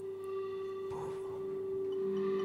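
A single sustained musical note from a live band, held steady and slowly swelling in level, with faint higher overtones and a little background noise.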